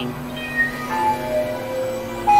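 Electronic synthesizer drone: held tones at several pitches, with single notes stepping in and out above a steady low tone.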